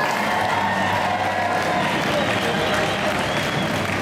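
Audience applauding steadily, with music and voices underneath.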